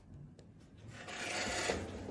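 A soft rubbing, scraping noise that swells about halfway through and lasts about a second, with a few faint clicks before it.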